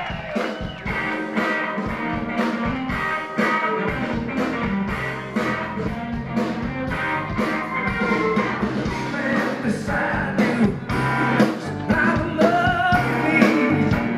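Live blues-rock band playing amplified through a PA, with a steady drum beat, electric guitar and a singing voice.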